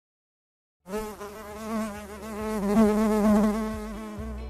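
Buzzing of a flying bee, a sound effect: a steady, slightly wavering buzz that starts about a second in after a moment of silence and swells louder toward the middle.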